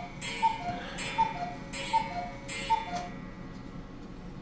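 Black Forest cuckoo clock calling "cuckoo", each call a higher note followed by a lower one with a breathy hiss, repeating about every three-quarters of a second and stopping about three seconds in.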